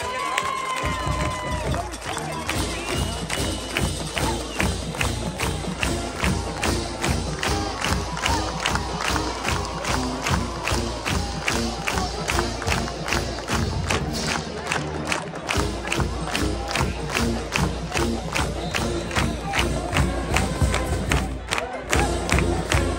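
A high school marching band playing an up-tempo tune, with a steady drum beat of about three strokes a second, over a crowd cheering a touchdown.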